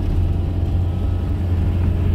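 John Deere excavator's diesel engine running at a steady speed, heard from inside the operator's cab as an even, deep drone.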